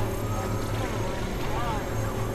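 Experimental synthesizer drone: a steady low hum under a harsh, noisy wash, with a couple of short arching pitch glides riding on top.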